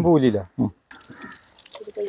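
A person's voice for about the first half second, then a sudden drop to silence, then faint room noise with a few light ticks. A voice starts again near the end.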